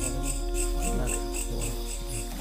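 Insects, likely crickets, chirping in a steady high pulse of about four chirps a second, over a low, sustained musical drone.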